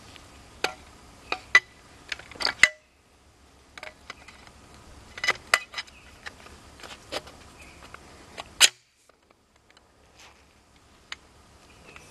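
Irregular metal clicks and clacks of a shotgun being put together by hand as the barrel and magazine tube are fitted, with two louder clacks about two and a half seconds in and near eight and a half seconds.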